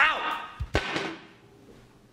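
A man's voice sounding briefly with a falling pitch, followed by two thumps just under a second in, then the sound dies away.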